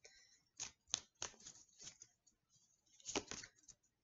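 Faint handling of tarot cards: soft clicks and rustles as a card is drawn from the deck, scattered through the first two seconds with a denser cluster a little after three seconds.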